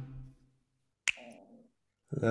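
Electronic music fading out, then near silence broken once by a single sharp click about a second in, with a brief faint tail.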